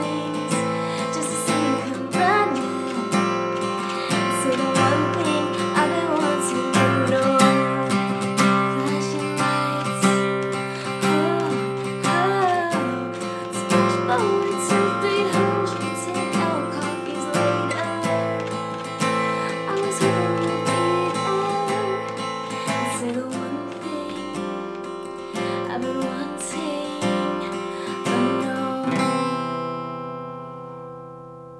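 Red Fender Sonoran steel-string acoustic guitar strummed in a steady down-up pattern through a C–Fsus2–Am–Fsus2 progression, with a voice singing over it at times. Near the end the strumming eases off and the last chord rings out.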